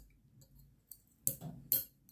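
A few sharp metallic clicks, two strong ones a little under half a second apart after a fainter tick: small strong magnets being pulled out of an aluminium fidget slider and clicking against a steel plate.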